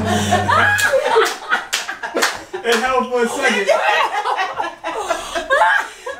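Several people laughing and exclaiming excitedly, with sharp smacks scattered through. A held brass-music chord ends about a second in.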